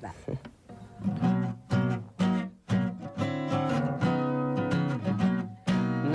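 Steel-string acoustic guitar playing a slow intro of chords, a new chord struck about every half second to a second and left to ring: the opening of a song before the vocals come in.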